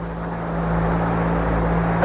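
Radio static on the Apollo 11 air-to-ground link: a steady hiss with a low hum under it, growing a little louder, on the open channel between Buzz Aldrin's descent callouts.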